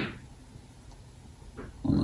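Low room noise with one short breath noise from the presenter, a sniff-like sound, right at the start; a man's voice begins speaking just before the end.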